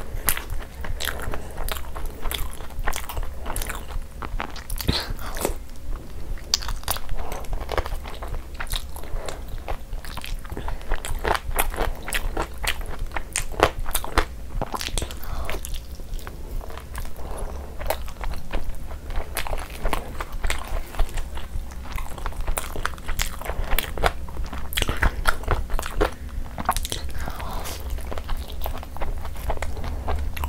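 A person eating with her hands: chewing and biting into butter chicken, soft luchi and a chicken drumstick, with many short mouth clicks all through.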